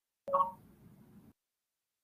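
Dead silence of video-call audio, broken about a quarter second in by one brief pitched sound that fades within a quarter second, with a faint hiss that cuts off abruptly.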